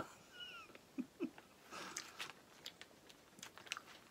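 A woman's short, high-pitched whimper as the heat of a very spicy squid snack hits, followed by soft mouth clicks and a breathy exhale while she chews.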